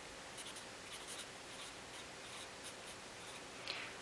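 Felt-tip marker pen writing words on paper: a run of short, faint strokes.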